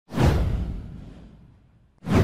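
Whoosh sound effect from an animated logo intro, with a deep rumble underneath. It swells in sharply just after the start and fades away over nearly two seconds.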